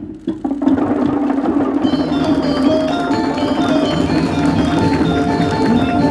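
A few hollow knocks on a Balinese okokan, a wooden cowbell-like instrument, struck to open the event. Then loud percussion music takes over, with ringing metallic tones that step from note to note from about two seconds in.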